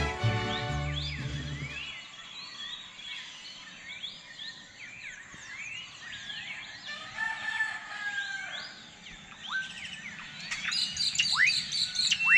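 A sung song with accompaniment fades out in the first two seconds, leaving many birds chirping and calling in quick, overlapping rising and falling notes, with a few sharp falling whistles near the end.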